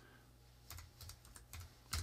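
Faint keystrokes on a computer keyboard: a few separate taps, mostly in the second half, as a course name is typed.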